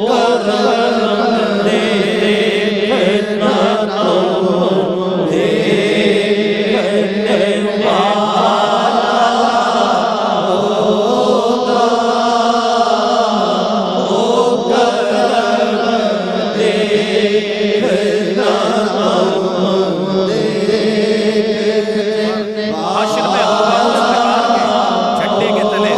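A man chanting a naat, a devotional poem, in a melodic voice over a steady low drone.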